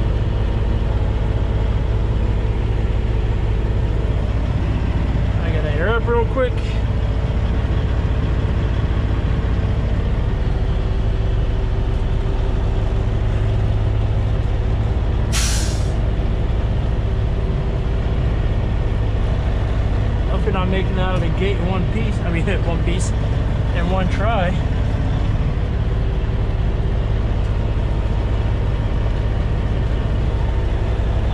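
Kenworth W900 semi truck's diesel engine running, a steady low rumble heard from inside the cab. About halfway through comes one short, sharp hiss of air from the truck's air brake system.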